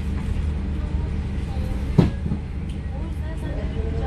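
Passenger ferry's engine running with a steady low rumble, heard from inside the cabin as the boat moves along the pier. A single sharp thump about halfway through.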